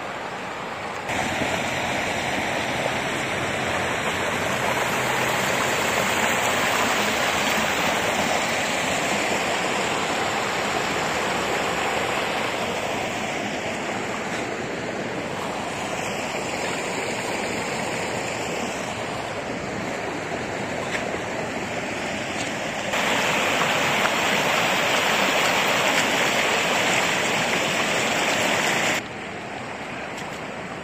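Floodwater running across a flooded road, a steady rushing noise that gets louder about a second in and again about two-thirds of the way through, then drops back near the end.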